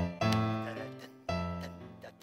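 Piano-voice chords played on a Casio electronic keyboard, heavy low chords struck about a second apart, each ringing out and fading before the next.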